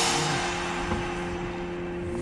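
Background music ending: a held chord rings on and slowly fades away.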